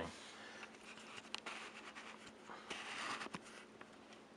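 Faint fizzing and crackling of many small bubbles popping on the surface of fermenting tomato mash, with scattered tiny clicks that swell a little near three seconds in. It is the sign of an active ferment freshly fed with aerobic bacteria.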